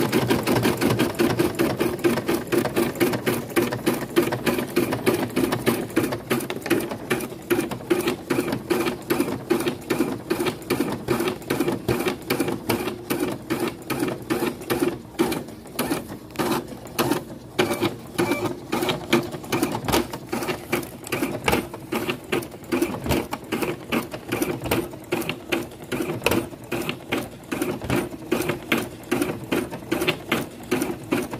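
Embroidery machine stitching a design in a hoop: a rapid, even run of needle strokes. From about six seconds in the stitching is a little quieter and the strokes stand out more distinctly.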